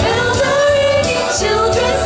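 Two women singing into handheld microphones, with the bass of the backing track dropping out for about the first second and a half and coming back near the end.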